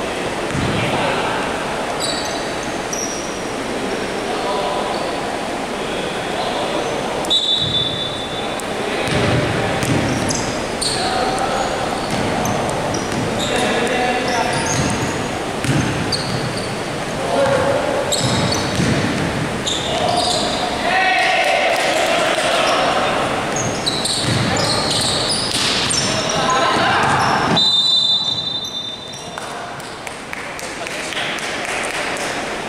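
Basketball game sounds echoing in a large sports hall: the ball bouncing on the wooden court, short high squeaks of sneakers, and players calling out.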